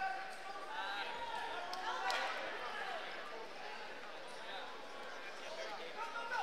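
Scattered voices of onlookers calling out in a large hall, with a single sharp slap or knock about two seconds in.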